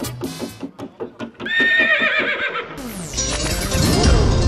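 A horse whinny sound effect, preceded by a quick run of hoofbeats, then a swelling whoosh about three seconds in.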